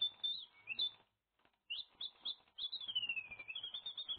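Small songbird chirping: short high chirps, a pause of under a second, then a run of quick chirps and a long falling trill near the end.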